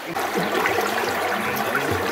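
Shallow river running over a gravel and cobble bed, a steady rush of moving water.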